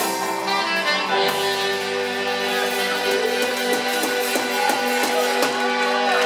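Live pub band playing amplified rock, with saxophone, keyboard and electric guitar over a steady drum beat.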